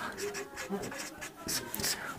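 Marker pen writing on a whiteboard in short strokes, busier in the second half.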